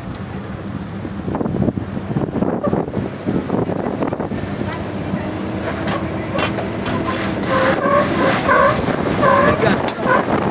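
Jeep Wrangler TJ engine running at a low crawl as the Jeep noses down a sandstone ledge, with scattered knocks and crunches of the tyres and body on the rock. People's voices call out over it in the last couple of seconds.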